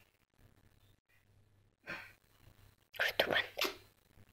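A man's voice, quiet and brief: a short sound about two seconds in, then a few short soft syllables near the end, with near silence between.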